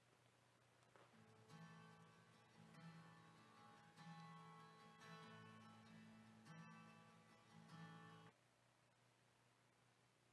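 Faint acoustic guitar strumming a run of chords, a song intro that starts about a second in and cuts off suddenly after about seven seconds.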